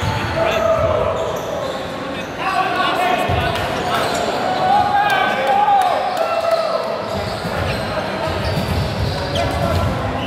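Volleyball players calling and shouting to one another in an echoing sports hall, with a volleyball thudding as it bounces on the hard court floor.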